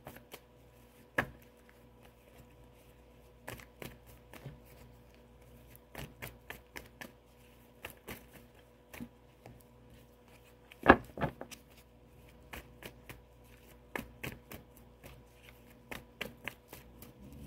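A tarot deck being shuffled and handled: scattered soft snaps and flicks of the cards, with one sharper card snap about two-thirds of the way through.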